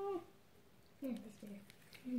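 Wordless voice sounds: a held vowel or hum ends just after the start, then two short falling syllables come about a second in.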